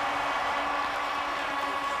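Crowd of spectators cheering and applauding at a steady level, with a couple of steady tones running through the noise.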